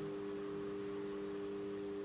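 A steady low hum made of a few held tones, with nothing else happening.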